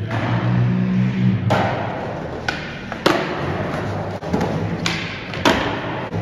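Skateboard wheels rolling on concrete with a low rumble, then a series of sharp clacks and thuds about once a second from the board hitting the ground on pops and landings.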